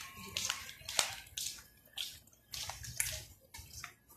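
Footsteps of a person walking on hard paving, short sharp steps at about two a second.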